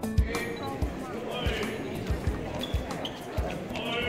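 Background music: a song with a singing voice over a steady, thumping beat.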